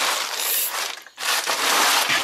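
Blue plastic tarp rustling and crinkling as it is pulled and handled, in two stretches with a short break about a second in.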